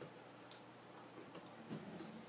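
Quiet room tone with a few faint ticks.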